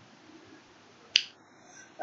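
A single short, sharp click about a second in, over faint steady room hiss.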